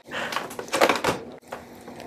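Rustling and knocking of handling noise as the camera is moved, busiest in the first second and fainter after.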